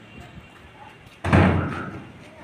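A sudden loud thud about a second and a quarter in, dying away over about half a second.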